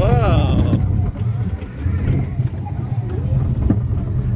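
Steady low rumble of a moving children's ride car running along its track. A short rising-and-falling vocal cry comes over it in the first second.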